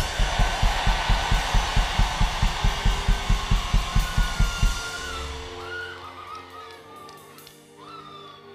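A live church band plays rapid, even kick-drum beats, about six a second, under a bright cymbal wash. The drumming fades out about five seconds in, leaving soft sustained keyboard chords.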